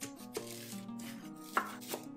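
Chef's knife cutting through a leek and striking a wooden cutting board: several crisp knife strikes, the loudest about one and a half seconds in. Background music plays underneath.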